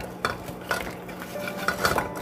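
Metal tongs clinking several times against a plate and the rim of a pot as thin-sliced pork belly is dropped into boiling water, over the water's steady bubbling.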